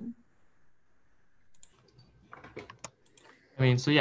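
A few faint clicks and light knocks from a framed butterfly display being picked up and handled. They fall mostly in the second half, after a quiet start, and a man starts speaking near the end.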